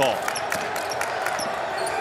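A basketball being dribbled on a hardwood court, with short sharp ticks and the steady hum of a basketball arena around it.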